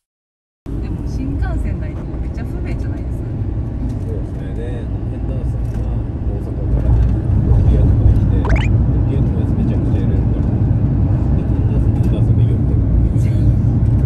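Road and engine noise heard from inside a moving car: a low, steady rumble that gets louder about seven seconds in, with people talking quietly over it.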